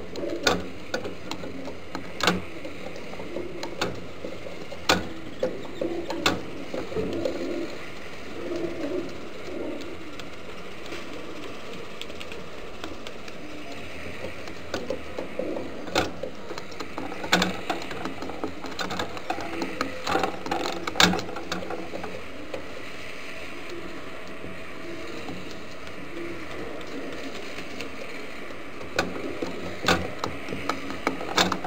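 Homing pigeons cooing in low, repeated murmurs, with scattered sharp clicks and knocks.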